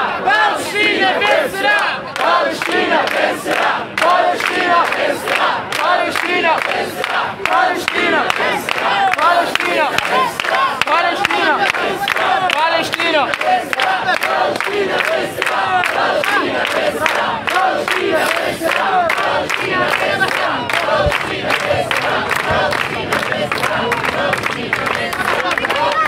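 A crowd of demonstrators shouting a chant together, with many voices overlapping and steady rhythmic clapping throughout.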